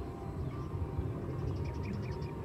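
Outdoor rural ambience: a steady low rumble, with a fast, high-pitched trill of evenly spaced ticks in the second half.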